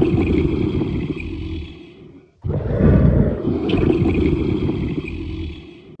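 A low growling roar, the sound effect given for a Komodo dragon, heard twice. The first ends in a fade about two seconds in; after a brief gap the same sound starts loud again and fades away towards the end.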